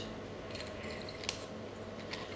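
Quiet bar room tone with a steady faint hum and one small click about a second in.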